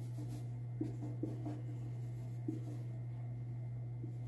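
Whiteboard marker writing on a whiteboard: faint scratching of the felt tip with a few light taps, over a steady low hum.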